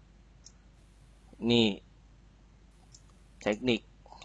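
Speech only: a man says two short words in Thai, about a second and a half apart. Quiet room tone fills the pauses.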